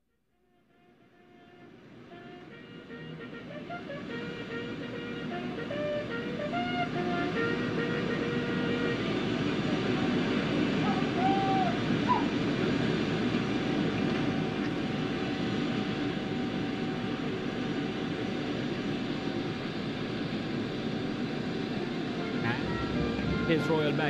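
Tarmac sound fading in over the first few seconds: band music played with the quarter guard's salute, over the steady whine of a parked jet's engines.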